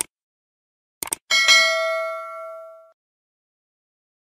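Subscribe-button animation sound effect: a click right at the start, a quick double click about a second in, then a notification bell ding that rings for about a second and a half and fades away.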